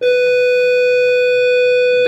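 School bell sounding as one steady tone, starting abruptly and holding a constant pitch.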